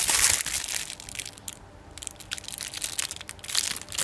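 Clear plastic bag crinkling around a laptop cooling fan as the fan is handled and turned over, in several irregular bursts, loudest at the start.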